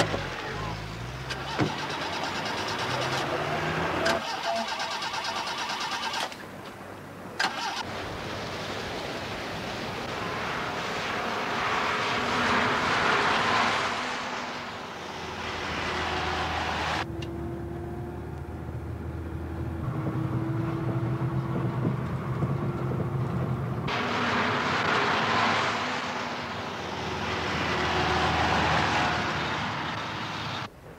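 Car engines running and revving as cars pull away and drive, with the road noise swelling twice as vehicles pass.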